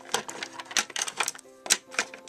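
Hard plastic toy figures and playset pieces clicking and clacking as hands move them about and set them down on the table: a run of irregular sharp clicks, the loudest near the end. Soft background music with held notes underneath.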